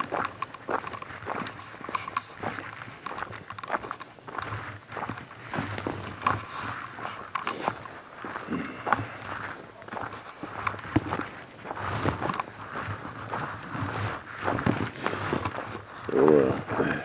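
Footsteps of a person walking over thin snow on the ground, beside a leashed dog: a steady run of short, irregular steps.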